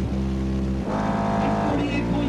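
Competition car audio subwoofers playing a loud, steady bass tone with distorted overtones during a dB drag sound-pressure run. About a second in, the note changes to a buzzier one, then returns near the end.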